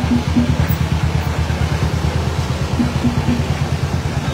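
Motorcycle and scooter engines running at low speed in a slow-moving crowd of two-wheelers, a steady low pulsing several times a second.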